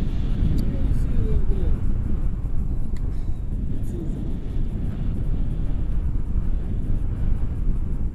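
Airflow buffeting a selfie-stick camera's microphone in flight on a tandem paraglider, a steady low rumble with no pauses. Faint snatches of voice come through in the first few seconds.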